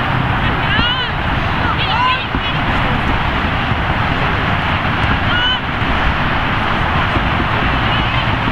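Short shouted calls from people about one and two seconds in and again about five and a half seconds in, over a steady rushing noise.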